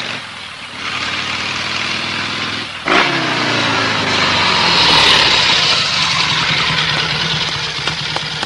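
Motorcycle-with-sidecar engine sound effect as it rides: a steady engine sound that jumps suddenly louder about three seconds in, its pitch dropping, then runs on steadily.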